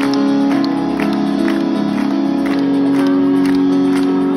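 Live band music over a large outdoor concert PA: an instrumental passage of held keyboard chords, with a light beat ticking about twice a second.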